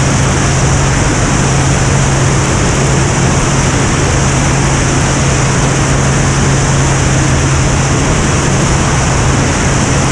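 Extra 330LX aerobatic airplane's six-cylinder Lycoming engine and propeller running steadily at speed in a low pass, with a steady low drone and rushing airflow noise.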